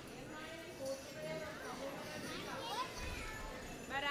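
Many young children's voices chattering and calling out at once, overlapping into a busy hubbub, with a high child's voice standing out near the end.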